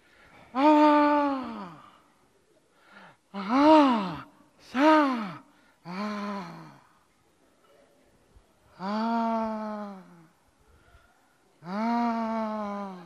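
A man's straining groans, six drawn-out cries in a row, each rising then falling in pitch, with short pauses between.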